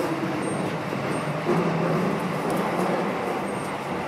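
Subway train running through a tunnel into a station, a steady rumble of wheels on rail with a low motor hum, heard from inside the driver's cab.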